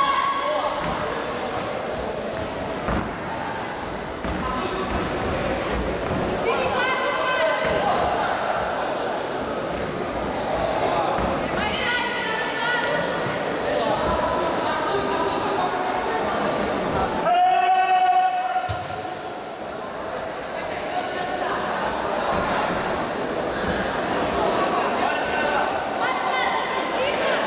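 Voices shouting in an echoing sports hall during an amateur boxing bout, over repeated dull thuds of gloved punches landing; one loud, held shout comes a little past the middle.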